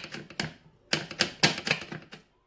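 Chef's knife chopping rapidly on a wooden cutting board, blade knocking against the wood. The chops come in two quick runs with a short pause between them.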